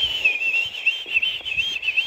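A person whistling one long, loud, warbling whistle to call cattle in.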